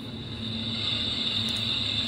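Hiss of AM-band static from the Ebright pocket radio's small speaker, growing gradually louder as the volume is stepped up to its maximum of 38.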